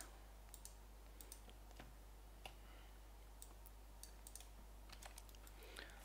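Faint, scattered clicks of a computer mouse and keyboard, a dozen or so irregular ticks over near-silent room tone with a steady low hum.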